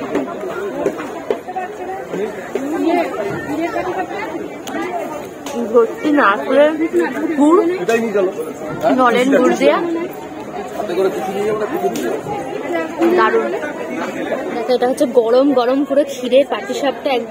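Busy crowd chatter: many voices talking over one another.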